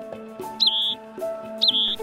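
A small bird calling twice, about a second apart: each call a quick high chirp sweeping up and down, then a short trill, over background music of sustained notes.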